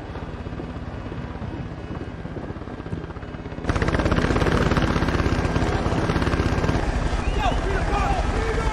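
Several helicopters hovering, their rotors chopping rapidly; muffled at first, then much louder from about three and a half seconds in.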